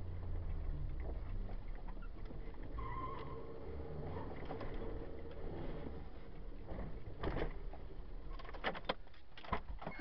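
Opel Corsa 1.4 four-cylinder petrol engine running, heard from inside the cabin as the car is driven hard, with a few sharp knocks and rattles in the last three seconds.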